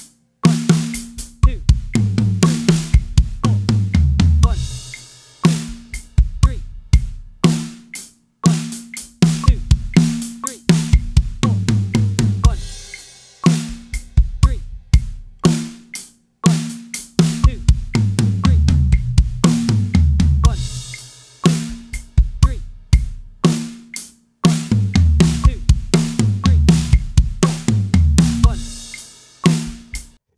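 A drum kit played at a slow 60 BPM: a bar of eighth-note groove alternates with a bar of a linear 6-6-4 fill, whose hand strokes move freely between snare, toms and cymbals with bass drum in between. The two-bar cycle comes round about four times, each fill stepping down in pitch through the toms.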